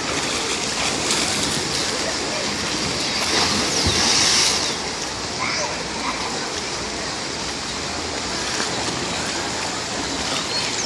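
Water rushing steadily off the water slides into a pool, with splashing and voices in the background; a little louder about four seconds in.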